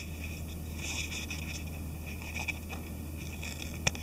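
Faint rustling and a few light ticks of a paper instruction manual being handled and opened, with a sharper click near the end, over a steady low hum.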